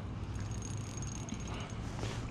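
Steady low background of flowing river water and outdoor air, with a faint thin high-pitched tone that lasts about a second and a half.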